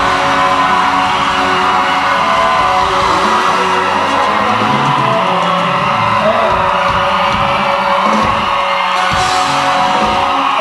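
Live band playing a pop-rock song with male singers on handheld microphones, amid yells and whoops from the audience.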